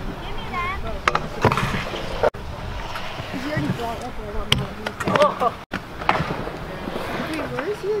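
Kick scooter wheels rolling on a concrete skatepark, with several sharp clacks as the scooters hit ramp edges and land, and distant voices of other riders in the background.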